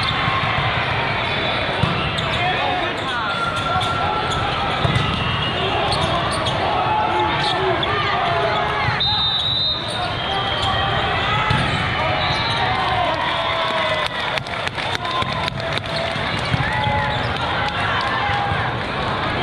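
Busy indoor volleyball hall: many voices talking and calling at once, with sneakers squeaking on the sport-court floor and balls thudding as they are hit and bounce. There is a cluster of sharp hits about three-quarters of the way through.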